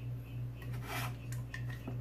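Faint, scattered light taps and rubbing from objects being handled on a tabletop, the last tap coming as a hand reaches an aluminium beer can near the end, over a steady low hum.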